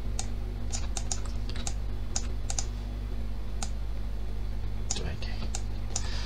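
Irregular clicks of a computer keyboard and mouse as the user works the software, about a dozen spread unevenly, over a steady low electrical hum.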